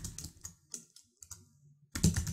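A few soft keystrokes on a computer keyboard, typed slowly and unevenly, with a sharper keystroke near the end.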